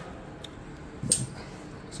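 Handling noise over quiet shop room tone: a faint click, then one sharp, bright clack about a second in, as of a hand tool being picked up or a camera mount being set.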